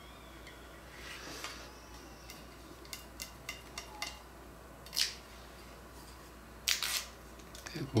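Backing liner being peeled off double-sided adhesive tape on a plastic guitar support, with light clicks and taps of handling, and a short scratchy rip near the end that is the loudest sound.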